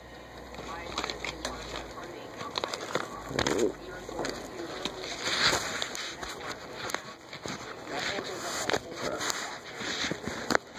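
A padded mail envelope being handled and opened by hand: irregular crinkling, rustling and sharp little clicks of paper and plastic packaging.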